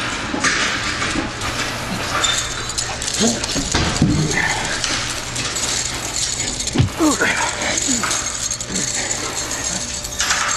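Scuffling and clothing rustle as a man is held against a wall and tied up, with a few short strained vocal cries from him around the middle of the struggle.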